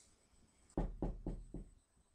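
Four quick knocks on a door, about a quarter of a second apart.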